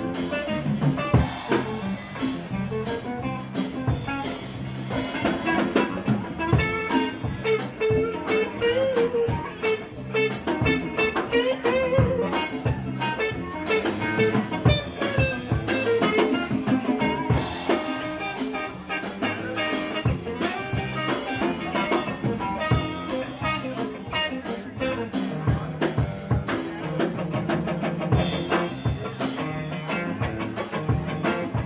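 Live band playing an instrumental passage: electric guitar with drum kit keeping a steady beat, the guitar holding and bending long melodic notes partway through.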